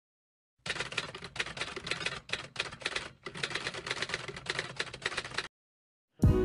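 A rapid, dense run of clicks, like keys being struck, starting just under a second in, broken by three brief pauses and stopping about half a second before the end.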